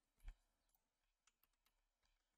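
Faint computer keyboard keystrokes as a number is typed: a few light, separate clicks, with one louder soft knock near the start.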